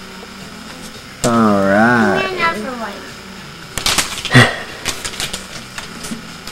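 A person's wordless drawn-out vocal sound, rising and then falling in pitch for about a second, followed a couple of seconds later by a few brief clicks and crackles of handled paper or toy.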